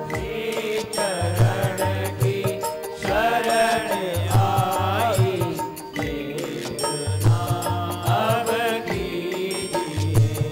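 Devotional chant sung by a voice over musical accompaniment, with sustained tones and a low drum beat that recurs every few seconds.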